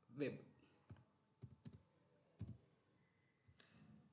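Faint, scattered clicks of a computer keyboard and mouse: about half a dozen light, separate clicks spread over a few seconds as a short search term is typed.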